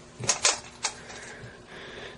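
Three light, sharp clicks in the first second, as of small metal parts being handled, then quiet with a faint steady hum.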